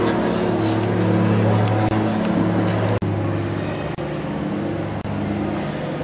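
Open-air shopping mall ambience picked up by a camcorder microphone: a steady low hum with voices of passers-by in the background. The sound cuts out abruptly for an instant at about three seconds and again at five, where the footage is spliced.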